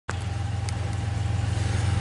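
A steady low engine drone, slowly growing louder.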